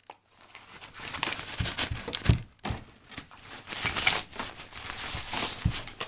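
Close-up handling noise: rustling and crinkling with scattered sharp knocks and clicks as small items and the recording camera are picked up and moved about, starting about a third of a second in and easing briefly around the middle.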